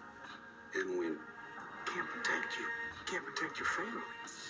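Film dialogue, played quietly, over a soft music score.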